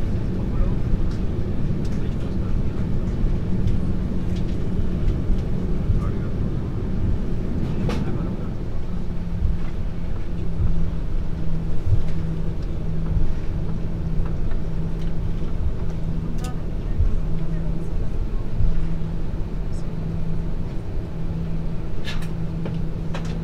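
Cabin rumble of an Airbus A340-300 rolling out on the runway after landing, its four CFM56 engines running low and the landing gear rumbling on the pavement. A low hum runs under it and, about halfway through, starts pulsing on and off at an even pace.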